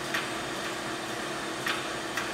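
Neptune 500 series hydraulically actuated diaphragm metering pump running with a steady hum and a few ticks, as its stroke setting is being turned back down to zero.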